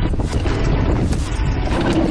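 Wind buffeting the microphone of a mountain biker's camera during a fast descent, over a steady low rumble of the bike's tyres rolling on a dirt trail.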